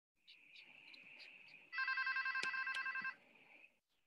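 A telephone ringing: one warbling electronic ring lasting about a second and a half, starting a little under two seconds in, over a faint steady high hiss. A single sharp click sounds during the ring.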